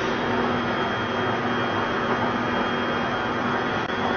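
Medical scanner running as the scan starts: a steady machine noise with a low hum and a faint high whine.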